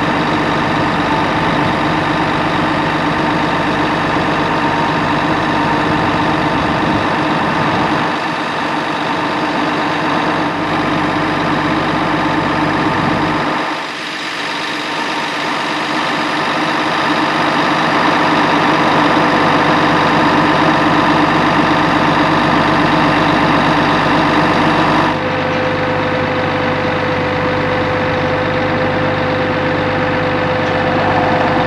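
Heavy diesel truck engines running steadily with a low, even hum. About 25 seconds in the sound changes abruptly and a higher steady whine comes in.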